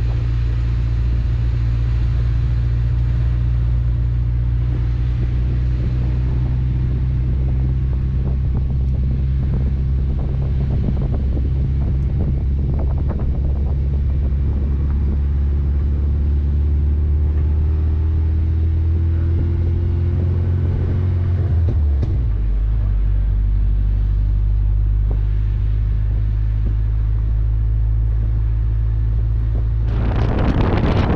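A car engine running with a low, steady drone, a faint tone rising slowly over several seconds, then a sudden drop in the drone about 22 seconds in, as on a gear change.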